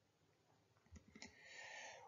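Near silence, broken about a second in by a few faint short clicks, then a faint soft intake of breath near the end.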